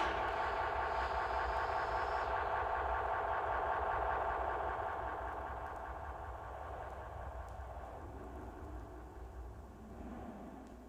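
A steady mechanical hum that slowly fades away over the seconds.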